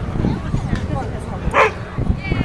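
A dog gives one short, sharp bark about one and a half seconds in, over background chatter.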